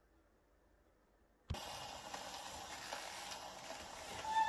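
Near silence, then about a second and a half in a single soft knock as the steel needle of an Orthophonic Victrola's reproducer is set down on a spinning 78 rpm shellac record, followed by steady surface hiss with faint crackle from the unrecorded lead-in groove.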